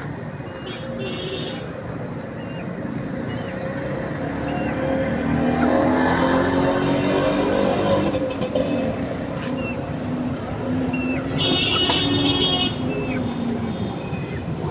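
Passing road traffic: vehicle engines rise in pitch and fall away, loudest through the middle. A short high chirp repeats every second or so, and a brief high rasping sound comes near the end.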